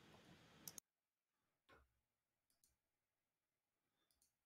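Near silence: faint room tone with two small clicks less than a second in, after which even the background noise cuts off abruptly, leaving only a few very faint ticks.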